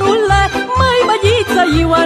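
Romanian folk band playing with violins and accordion: a high, ornamented melody with heavy vibrato over a steady bass beat.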